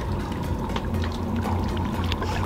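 Water lapping and sloshing against a boat hull over the steady low hum of the boat's idling engine.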